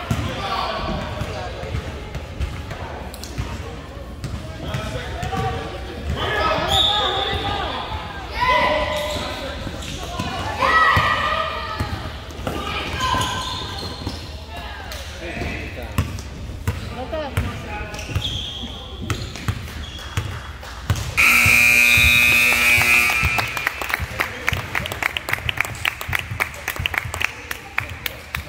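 A basketball bouncing on a hardwood court in an echoing gym, with shouting voices, then the scoreboard buzzer sounds loudly for about two seconds near the end, marking the final horn with the game clock at zero.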